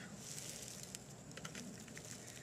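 Faint, scattered small scrapes and clicks from a knife working a small piece of wood, with a little rustle of dry leaf litter.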